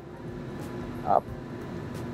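A steady background hum with faint steady tones, broken about a second in by one short spoken word.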